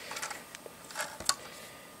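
A handful of light plastic clicks and taps as LEGO pieces are handled: the brick-built pickup and a rubber balloon tire on its rim are picked up and moved about.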